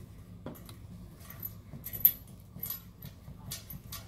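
Faint scattered clicks and light metallic ticks from a hand turning a small stainless valve on an odorant expansion tank, over a low steady hum.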